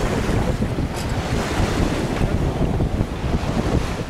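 Wind buffeting the microphone on the deck of a sailing yacht under way, with sea water rushing along the hull: a steady, rough rush with a heavy low rumble.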